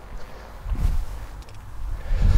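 Footsteps of a man walking across the bay's floor, with faint handling noise, a soft low thump a little under a second in and a faint click about halfway through.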